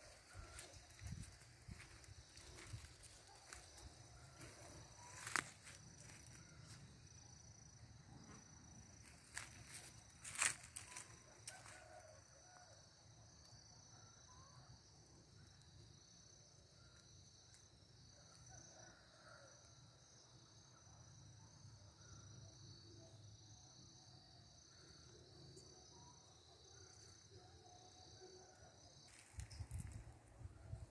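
Near silence in open grassland: faint outdoor ambience with a steady high insect drone and a low rumble of wind or handling. Two sharp clicks come about five and ten seconds in.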